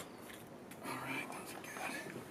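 A faint, indistinct murmur of a man's voice, too low to make out words, with a short click at the very start.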